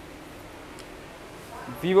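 Quiet room tone with a faint steady hiss and a light tick or two, then a man starts speaking near the end.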